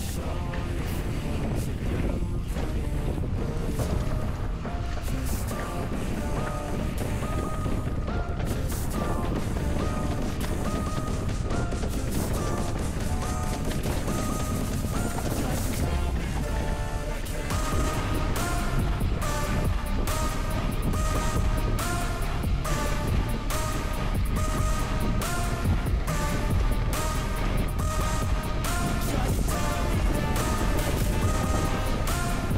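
Background music with no vocals: a steady beat under a repeating melody, filling out more strongly after about 17 seconds.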